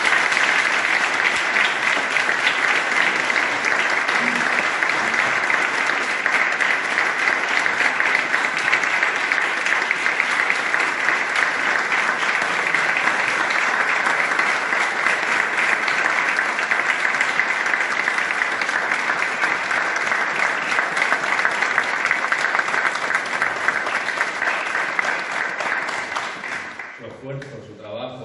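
A large audience applauding loudly and steadily in a hall, dying away near the end.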